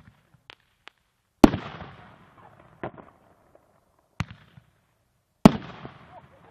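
Firework artillery shells: a few faint pops, then four sharp booms, each trailing off in a rolling echo. The loudest booms come about a second and a half in and near the end.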